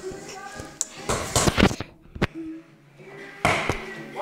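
A quick cluster of loud knocks and thumps about a second in, a sharp click near the middle, and two more knocks near the end, with children's voices faintly in between.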